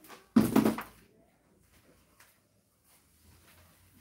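A single short clatter of a plastic container being handled on a workbench, about a third of a second in, followed by quiet with one faint click.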